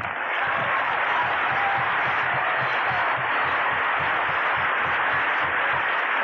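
Audience applauding: a steady, dense wash of clapping, heard on a muffled, narrow-band recording.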